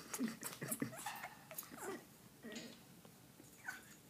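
African grey parrot vocalising at close range: a string of short calls in the first two seconds, then two more, the last falling in pitch near the end.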